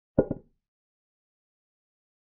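Chess-app piece sound effect: one short double knock like a wooden piece set down, as the bishop captures the pawn on h3.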